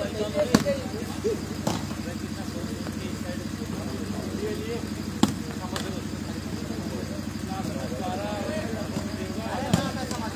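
A volleyball is struck by hand during a rally: about five sharp slaps at uneven intervals, the loudest about half a second in and another near the end. Spectators' voices and a steady hum run beneath.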